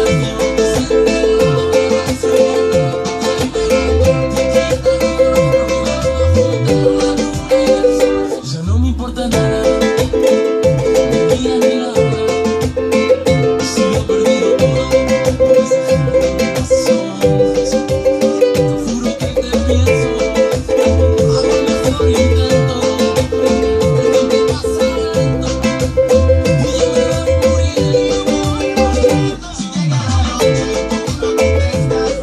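Ukulele strummed in a steady reggaeton rhythm, cycling through the A minor, F, C and G chords, over a repeating low beat. The strumming breaks off briefly about nine seconds in.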